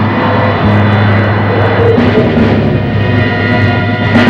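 A jeep's engine running as the jeep drives up, mixed with the film's background music.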